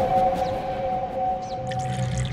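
Background score: a sustained two-note drone that fades over a low rumble, with short high blips coming in near the end.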